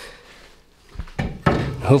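Low room tone with a single light knock about a second in, followed by a man starting to speak.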